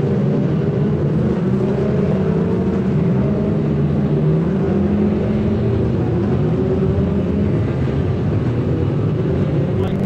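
Several Formula 2 stock car engines running together under racing load, their overlapping notes wavering up and down at a steady level.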